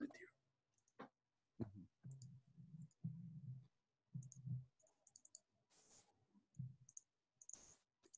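Near silence on a video call, broken by a few faint clicks, soft low murmurs and two short bursts of hiss near the end.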